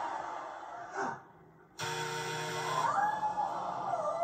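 Game-show losing buzzer: after a brief hush, a flat buzz starts suddenly about halfway through and lasts about a second, signalling that the price is wrong. It is followed by a voice that rises and falls in pitch. The sound is heard through a TV speaker.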